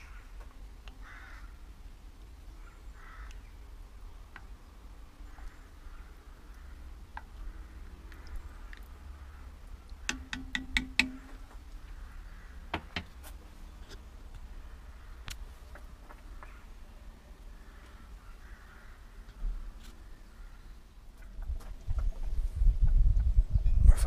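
Low rumble on the microphone with faint bird calls. A cluster of sharp metal clinks comes about ten seconds in, and heavier knocking and rumbling near the end as the enamelled cast-iron Dutch oven, its lid and the kamado's grill parts are handled.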